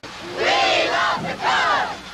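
A chorus of voices chanting a jingle slogan together in short shouted phrases, about half a second each with a brief gap between them.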